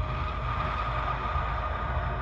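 A rumbling, noisy drone from a suspense film soundtrack, with one steady tone held above the rumble.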